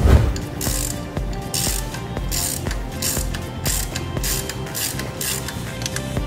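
Ratchet wrench with a 13 mm socket clicking in repeated strokes as it turns a bolt, with a sharp knock at the very start, over background music with a steady beat.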